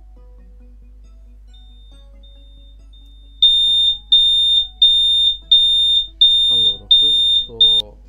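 Chicco BebèCare anti-abandonment disconnection alarm: a high electronic beep repeating about every 0.7 s, signalling that the child-seat device has lost its link to the phone while a child is recorded as seated. Faint short tones come first, then seven loud beeps start a few seconds in and stop just before the end.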